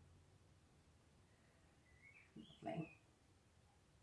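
Near silence: quiet room tone, broken a little after two seconds by one short, high squeak-like vocal sound that rises and falls in pitch and lasts under a second.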